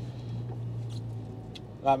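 Diesel engine of an HGV tractor unit running, heard inside the cab as a steady low hum.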